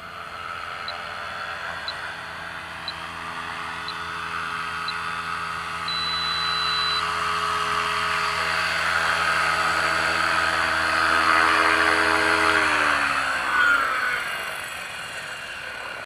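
Align T-Rex 550 electric RC helicopter flying in, its motor and rotor making a steady whine that grows louder as it nears. About thirteen seconds in, after it touches down, it spools down and the pitch falls away. Short high beeps sound about once a second for the first few seconds, then one longer beep.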